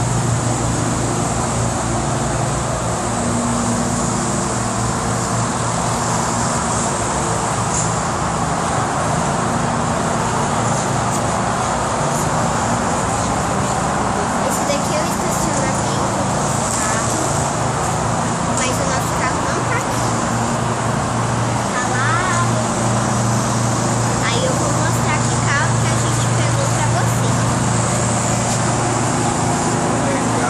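Steady road traffic noise with a constant low hum underneath, unbroken throughout.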